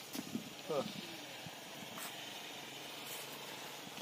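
A short spoken word, then a faint steady hiss of outdoor background noise.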